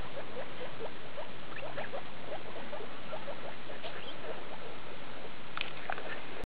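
Skinny guinea pigs, a mother and her pups, making a quick run of short, soft rising squeaks, several a second, as they graze.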